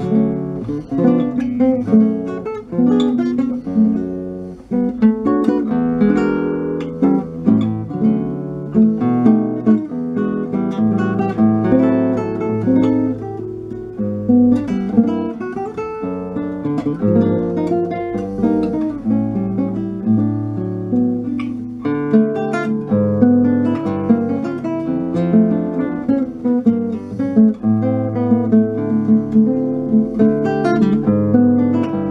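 Solo nylon-string classical guitar (Brazilian violão) plucked continuously, playing a melody over a moving bass line and chords.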